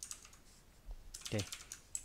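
Typing on a computer keyboard: a quick run of keystrokes in the second half, entering a line of code.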